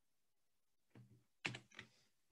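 Near silence, then a few short clicks of computer keys being pressed near the end.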